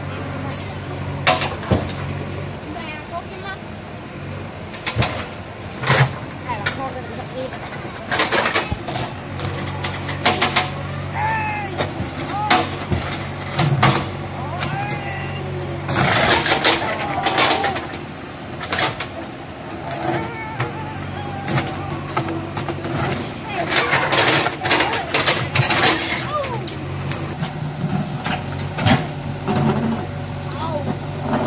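An engine running steadily through the whole stretch, with many short clanks and knocks over it.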